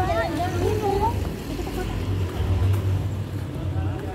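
Passers-by talking, with faint voices in the first second, over a continuous low rumble.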